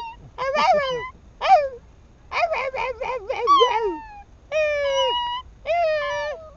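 Yorkshire terrier howling along in a string of high, wavering notes: several separate howls whose pitch slides up and down and wobbles, with one note held steady near the end.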